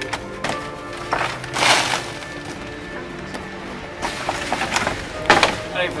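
Background music with sustained tones. Over it come a few short rushes of noise, the strongest about a second and a half in, as the coarse leftovers of sieved compost are tipped out of the sieve.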